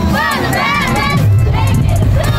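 A cheerleading squad of young girls shouting a cheer together in rhythmic bursts, over music with a booming bass beat.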